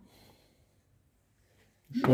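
Near silence: room tone in a pause between words, with a man's voice starting right at the end.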